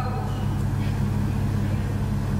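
Steady low electrical hum from a sound system, unchanging.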